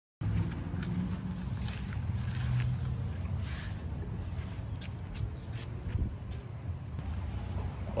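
Wind buffeting a phone microphone: a steady low rumble with a few faint rustles and clicks.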